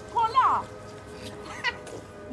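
High-pitched, cat-like jeering cries from a group of women. There are two short sliding calls in quick succession, then a brief rising one near the end.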